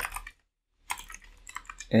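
Computer keyboard keystrokes: a few light key presses about a second in, as a line of code is typed.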